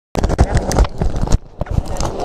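A quick run of irregular knocks and thumps, like handling and bumping inside an inflatable raft, with a short lull about one and a half seconds in.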